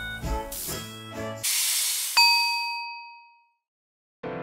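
Cartoon sound effects: the cheerful background music stops about a third of the way in and is replaced by a hissing whoosh, then a single bright bell-like ding that rings and fades out to silence.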